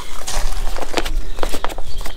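Low rumble of wind on the microphone, with a few short clicks and rustles as the frame bag's strap is handled.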